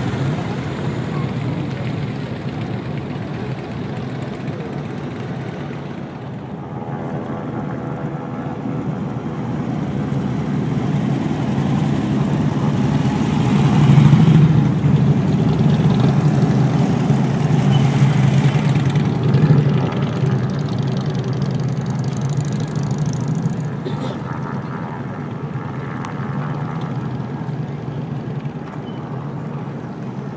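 Vehicles in a slow procession passing close by: a steady hum of engines and tyres that grows louder about halfway through as a hearse goes past, then eases off.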